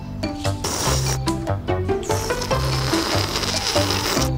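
Cartoon slurping sound effect: a long, noisy slurp starting about a second in, over background music with a bass line.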